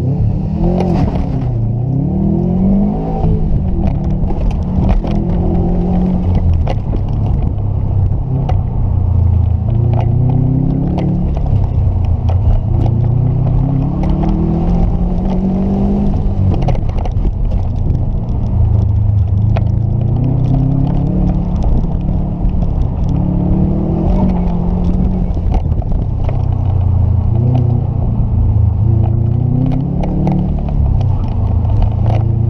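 Subaru WRX STI's turbocharged flat-four engine heard from inside the cabin, driven hard. It repeatedly revs up over a second or two and falls back as the car accelerates, lifts and shifts.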